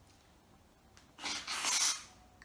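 Aerosol can of whipped cream spraying out cream in two short hisses, the second a little longer, in the second half.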